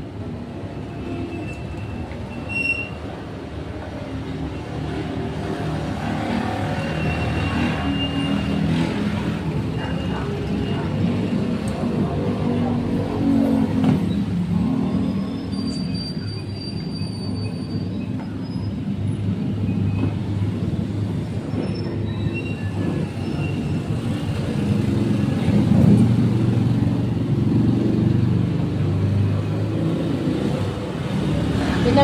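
A large vehicle's engine running in the street, a low steady drone that grows louder toward the last few seconds, with a few brief high-pitched squeals over it.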